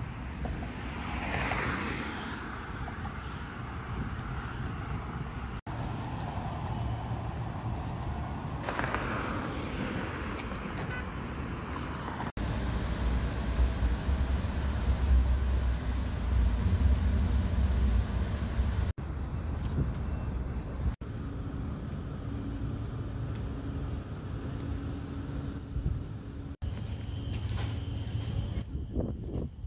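Traffic noise over several short clips: passing vehicles rise and fade twice in the first part, then a steady low road rumble from inside a moving car, the loudest stretch, through the middle. The sound changes abruptly at each cut.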